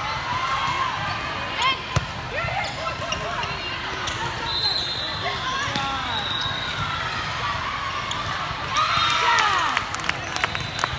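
Indoor volleyball rally in a large gym: players shouting short calls, sharp ball contacts with one loud hit about two seconds in, and a louder burst of shouting and cheering just before the end as the point finishes.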